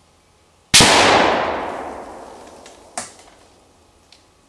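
A single shot from a 7.62x54R VEPR semi-automatic rifle about a second in, its report dying away over about two seconds. A shorter, fainter sharp crack follows about two seconds after it.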